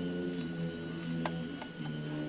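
High school concert band playing a quiet passage of held wind notes, with a few light percussion strikes ringing over them.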